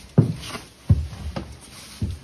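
Footsteps on old wooden floorboards, a heavy step about every half to two-thirds of a second.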